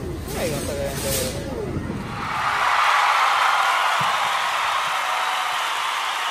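Brief muffled voice over low store background noise, then about two seconds in a steady, even hiss takes over and holds.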